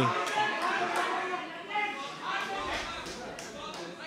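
Background voices and chatter echoing in a large hall, with scattered calls from the crowd and a few light taps.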